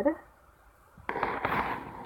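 A short pause, then about a second of crackling, rustling handling noise close to the phone's microphone as the phone is moved.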